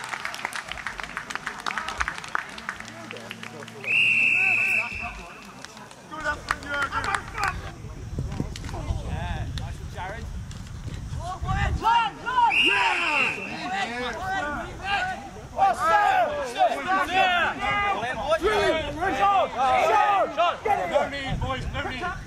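Referee's whistle blown twice, each a steady blast of about a second, about four seconds in and again about twelve seconds in, over shouting from players and spectators.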